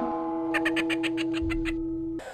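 Edited-in comedy sound effect: a steady, unwavering electronic-sounding tone with a rapid high trill of about eight pulses a second over its middle. It starts and stops abruptly.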